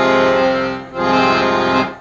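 Piano accordion playing two long held notes, with a short break about a second in; the second stops just before the end.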